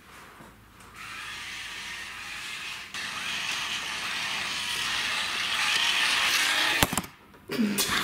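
Small homemade robot's electric drive motors and gears running as it moves across the floor, growing louder as it comes closer, with a short break about three seconds in. It stops with a click about seven seconds in.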